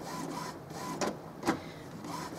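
Epson XP-3100 inkjet printer's mechanism running as it checks newly installed ink cartridges: a steady motor whir with a faint intermittent whine and two sharp clicks, about a second and a second and a half in.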